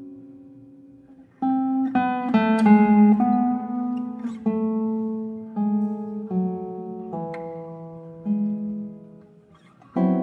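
Solo classical guitar playing a slow passage of plucked notes and chords, each left to ring and die away. A held sound fades out about a second in, a few quick notes follow, and then single notes sound one after another, each held.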